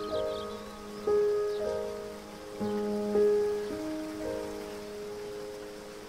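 Slow, gentle solo piano playing soft notes and chords, each left to ring and fade, over a faint steady wash of running water.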